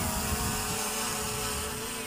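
DJI Mavic Air 2 quadcopter's propellers humming steadily as the drone climbs slowly.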